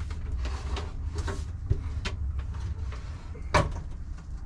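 Knocks and scrapes from a wooden upper kitchen cabinet and its range-hood vent being handled and pushed into place, with one loud sharp knock about three and a half seconds in, over a steady low hum.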